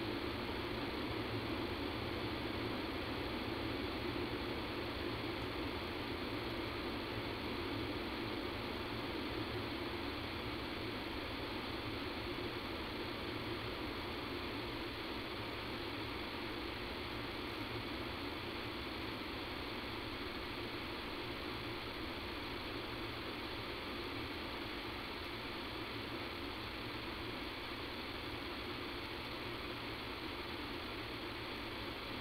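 Steady hiss and hum of line noise on a telephone conference-call recording, unchanging throughout, with no voice or music over it.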